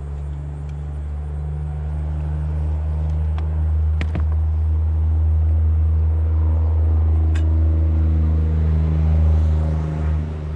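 A steady, low engine hum that grows slowly louder and eases off near the end, with a single sharp knock about four seconds in.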